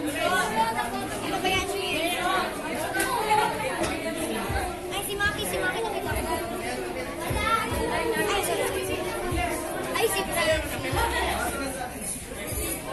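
Many people talking at once: steady overlapping chatter of a gathering in a room, with no single voice standing out.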